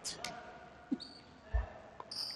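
A dodgeball bouncing once on a hardwood gym floor: a dull thud about one and a half seconds in. A brief high squeak comes just before it.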